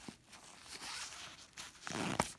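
The zipper on a nylon bag's outer pocket rasping, with the nylon fabric rustling as the pocket is pulled open and handled.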